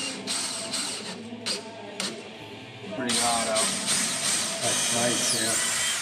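A cordless drill-driver runs, driving a screw into a countertop, over background music with singing. The sound gets louder and denser about halfway through.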